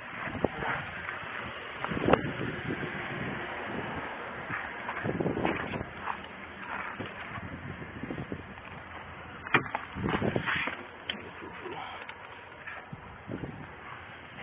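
Wind and clothing rustle on a body-worn camera microphone, with scattered knocks and clicks from a vehicle door being opened and handled, the sharpest about nine and a half seconds in.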